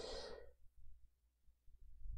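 A man's breathy sigh close to the microphone, dying away about half a second in, followed by near silence with a faint low hum.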